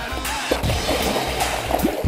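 A big muskellunge thrashing and splashing at the surface right beside the boat, over background music with a steady bass.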